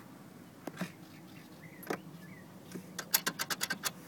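Portable 12-volt compressor fridge humming faintly with its compressor running, while its wire basket is handled: a couple of single clicks, then a quick rattling run of about eight clicks near the end.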